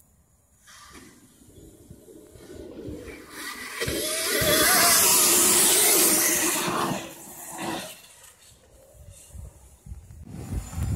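Electric motocross bike passing close on a dirt track: a wavering electric-motor whine over the hiss of tyres churning loose dirt, growing, loudest about four to seven seconds in, then fading away.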